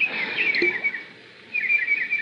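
Small birds twittering in quick repeated chirps, a recorded birdsong sound effect. The chirping breaks off briefly just after the middle, then resumes.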